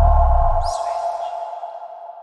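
Electronic channel-ident sting: a deep bass hit with a steady ringing tone that fades away slowly, and a brief high shimmering swoosh about half a second in.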